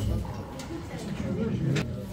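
Tennis ball struck by a racket during a rally, a sharp pop about two seconds in, with fainter hits earlier, over low murmuring voices of people nearby.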